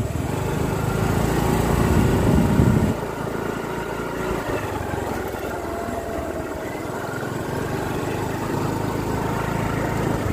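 Motor scooter running while being ridden. The engine rumble is louder for about the first three seconds, then settles to a steady lower level.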